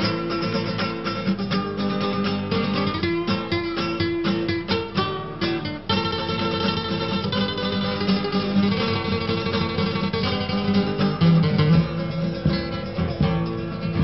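Instrumental introduction of an Argentine folk song led by acoustic guitar: quick plucked runs for about the first six seconds, then a fuller, more sustained accompaniment.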